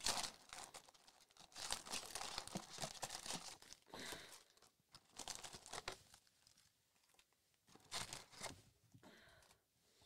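2022 Topps Allen & Ginter card packs crinkling and rustling in their wrappers as they are pulled out of the cardboard hobby box and stacked, in a run of short crackly bursts with a lull about seven seconds in, then a few more.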